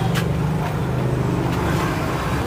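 An engine running steadily, a low droning hum with no change in pitch.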